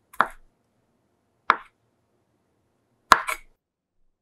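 Chef's knife chopping black olives on a wooden cutting board: three separate knocks of the blade against the board, about one every second and a half, the last followed quickly by a smaller second knock.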